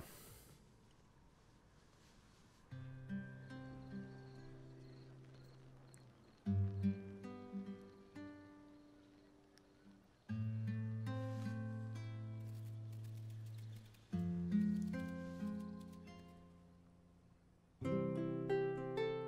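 Quiet, slow instrumental music of plucked acoustic strings, a guitar with a Colombian tiple. It is played as single chords about every four seconds, each left to ring and fade, beginning about three seconds in.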